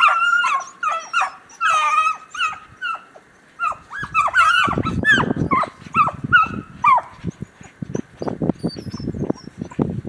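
A pack of 13-inch beagle hounds baying in quick, overlapping yelps as they run a rabbit's track; the hound voices die away about seven seconds in. From about four seconds in, footsteps crunch steadily through snow.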